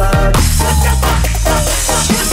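Breakbeat dance remix at 140 BPM with heavy bass and a driving drum beat, played back from a DAW project. About half a second in, a bright wash of noise spreads over the top of the mix.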